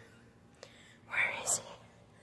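A person whispering briefly and quietly about a second in, with a sharp click right after it.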